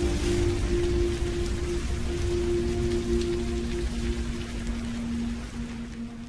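Background music of long held low notes over a dense hiss with a low rumble, fading out near the end.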